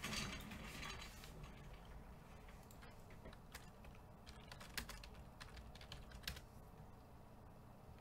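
Faint, scattered clicks of typing on a computer keyboard.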